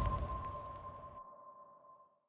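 The dying tail of an intro music sting: a single high ringing tone, with a fainter lower tone beneath it, fading out over about a second and a half.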